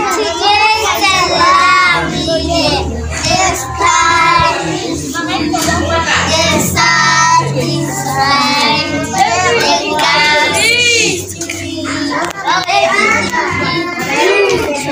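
A song sung in children's voices, with backing music that carries a steady low bass line.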